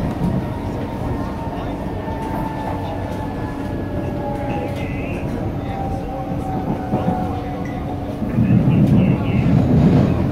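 Singapore MRT train running, heard from inside the carriage: a steady rumble of wheels on rail with faint high tones that slide slowly lower. The low rumble grows louder about eight seconds in.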